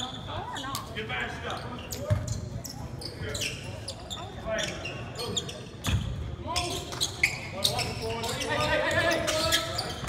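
Basketball bouncing on a hardwood gym floor during play, with players' indistinct calls and shouts, all echoing in a large gym.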